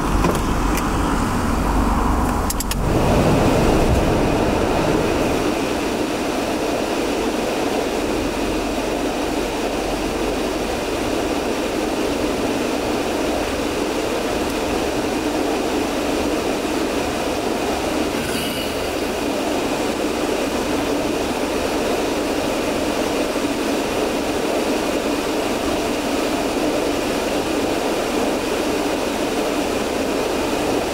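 Steady hum of a car idling at a standstill, heard from inside the cabin, with a few sharp clicks in the first few seconds.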